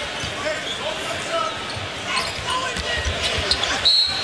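Arena crowd noise over a basketball being dribbled on a hardwood court during live play. Near the end a referee's whistle starts and holds, calling a foul on a drive to the basket that sends the shooter to the line for one more.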